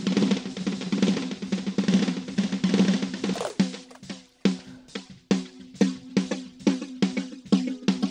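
Snare drum track played through the u-he Satin tape-machine plug-in in tape delay mode, each hit trailed by tape echoes. For the first three and a half seconds the repeats pile into a dense wash. Then, as a loop-delay preset is switched in, the hits come through clear and evenly spaced, with short ringing repeats.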